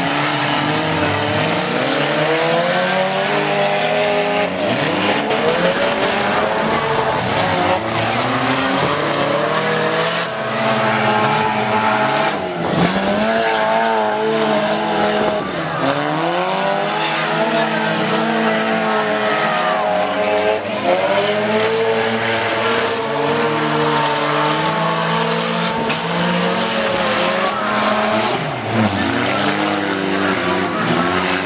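Several demolition derby stock car engines revving hard and easing off over and over, their pitches rising and falling against each other as the cars drive and ram on the dirt track.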